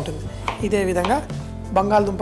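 Kitchen knife cutting through a peeled potato onto a wooden cutting board.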